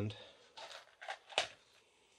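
Gloved hands handling a freshly demolded resin die and a pair of clippers: a short rustle, then two sharp clicks about a third of a second apart.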